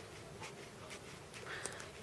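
Blunt scissors working at a thick bundle of wound wool yarn, giving a few faint snips and yarn rustles.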